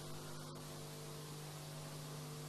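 Faint, steady electrical hum with a low hiss underneath, a constant low tone that does not change.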